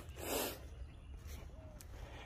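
A man's short breath lasting about half a second, then faint outdoor background noise.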